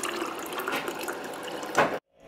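Water pouring from a refrigerator's water dispenser into a ceramic mug, a steady splashing fill. A sharp knock comes near the end.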